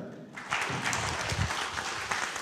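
Audience applauding, a dense patter of many hands that starts about half a second in.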